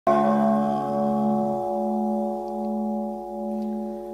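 A Buddhist bowl bell struck once at the start, its ringing sustaining with a slow, wavering pulse as it decays.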